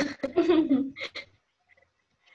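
A woman laughing over a video-call connection, trailing off after about a second into silence.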